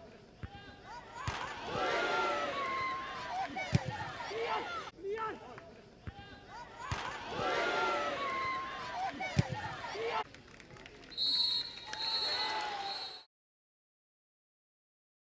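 Open-air football match sound: a ball struck hard, followed by several seconds of shouting voices, with the same sequence coming twice. Near the end a short, high electronic tone sounds, then the audio cuts to silence.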